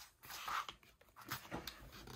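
A soft breath about half a second in, then a few faint taps and rustles of hands smoothing the pages of an open paper picture book.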